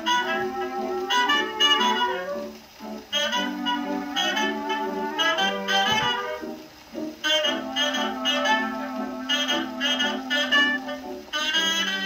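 Dance-band instrumental music from a 1933 Brunswick 78 rpm shellac record, played back acoustically through a phonograph's reproducer and gooseneck tone arm. The melody comes in phrases, with brief dips about three and seven seconds in.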